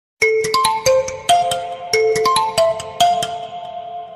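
Mobile phone ringtone: a bright, marimba-like melody of short notes that starts suddenly and plays its phrase about twice, signalling an incoming call.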